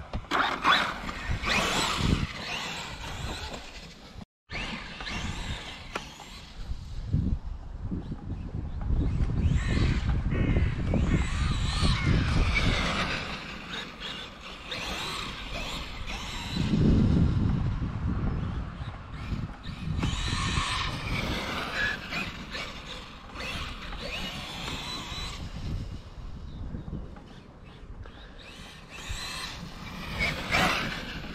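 Traxxas Wide Maxx RC monster truck's brushless electric motor and drivetrain whining, rising and falling in pitch as it speeds up and slows. Under it runs a low rumble that swells louder in the middle stretch.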